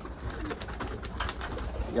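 Turkish roller pigeons (dönek) cooing softly in their loft.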